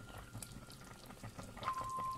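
Pot of chicken soup simmering on the stove, a faint light crackle of small bubbles. A thin steady tone comes in near the end.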